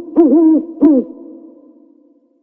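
Owl hooting: two short, deep hoots that rise and then fall in pitch, the second coming about two-thirds of a second after the first. After the second hoot the sound trails off and fades away over the next second.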